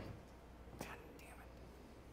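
Near silence: room tone with a faint steady low hum and one faint click a little under halfway through.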